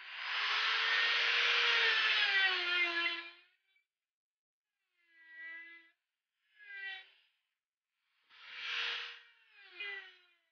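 Handheld electric straight grinder with a half-inch Saburrtooth ball burr cutting small divots into cedar. A loud whine lasts about three and a half seconds at the start, sinking slowly in pitch, then comes back in four short bursts in the second half as the burr is pressed in again.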